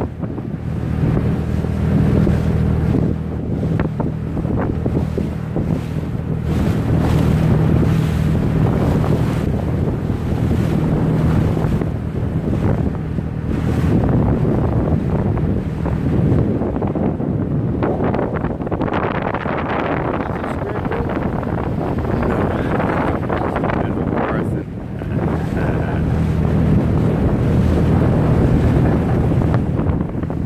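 Motorboat's 130 hp engine running steadily under way, a low drone, with wind buffeting the microphone and water rushing past the hull.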